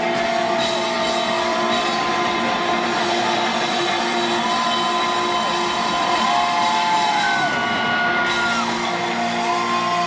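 Live rock band playing loud, with electric guitar holding long lead notes that bend up and down in pitch over the full band.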